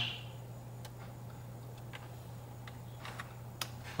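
A few light, irregular clicks over a steady low electrical hum, the sharpest one near the end.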